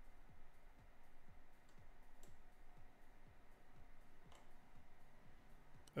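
Faint computer mouse clicks, a few seconds apart, over near-silent room tone.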